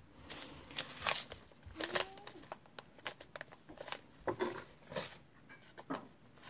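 Paper seed packets rustling and crinkling as they are handled and shuffled on a table, with scattered light clicks and taps.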